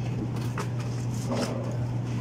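Steady low hum of a supermarket's refrigerated dairy display case, with two brief faint rustles about half a second and a second and a half in.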